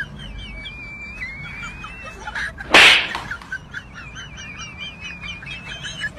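A high, warbling, bird-like whistle that trills and wavers, broken about three seconds in by one short, loud burst of noise.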